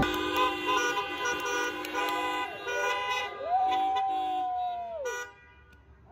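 Several car horns honking together, overlapping steady tones of different pitches, with one horn held for about two seconds near the end; they all stop about five seconds in.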